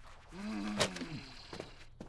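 A cartoon character's wordless vocal grunt, about a second long, bending in pitch, with a sharp click in the middle of it.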